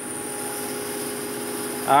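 Laguna 14|12 bandsaw and a two-stage Harbor Freight dust collector running together: a steady machine hum holding several constant tones.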